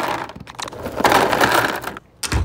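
Small ridged plastic building pieces poured from a cardboard box into a plastic tray, a dense clatter that comes in two bursts: one at the start and a longer one from about halfway.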